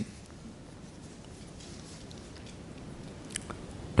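Quiet room tone with a low, steady hiss, and a faint click a little after three seconds in.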